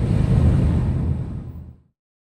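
Car driving, heard from inside the cabin as a steady low road-and-engine rumble that fades out near the end.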